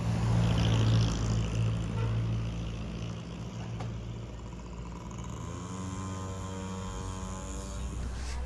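Street traffic: a motor vehicle passes in the first couple of seconds with a low rumble and rush. Then a steady engine note rises slightly in pitch as another vehicle draws near.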